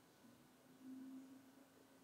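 Near silence with a faint, steady low hum that begins just after the start and swells briefly about a second in.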